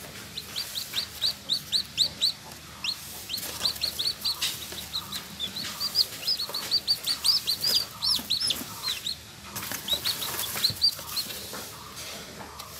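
Newly hatched chicken chick peeping over and over, several short high chirps a second, with a brief pause about three-quarters of the way through. A few rustles and knocks come from a hand moving in the straw of the incubator box.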